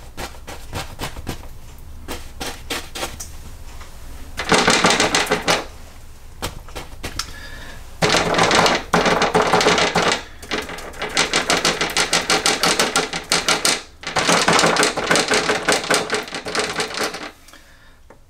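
Paintbrush tapping against a stretched canvas, stippling oil paint: scattered single taps at first, then four runs of rapid tapping, each one to three seconds long.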